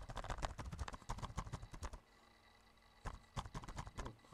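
Computer keyboard typing: a fast run of key clicks for about two seconds, a pause of about a second, then more keystrokes near the end.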